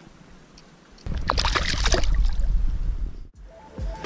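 Water splashing and sloshing close by, starting about a second in, with a heavy low rumble under it; it stops abruptly just after three seconds and music begins near the end.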